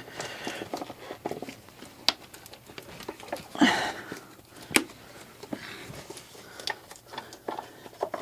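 Scattered clicks and light knocks of bolts, tools and plastic parts being handled around the timing belt cover of an engine bay, while wiring is moved aside. Two sharp clicks stand out, about two seconds in and just under five seconds in, with a brief scraping rustle in between.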